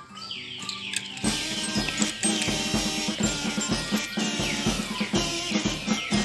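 Background music with a steady drum beat, coming in suddenly about a second in.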